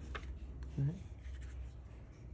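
Quiet handling noise: hands rubbing against and lifting a handmade knife in a wooden sheath off a cloth, with faint scratchy rustles and light clicks.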